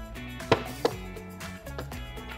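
Background music, with two sharp clicks close together about half a second in: a small Allen wrench working a bottom-plate screw on a Browning X-Bolt rifle.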